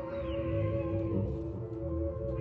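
Free improvised music from a quartet of analog synthesizer, alto saxophone, vibraphone and electric bass: several held, slightly wavering tones over a low bass line, with a short falling glide near the start.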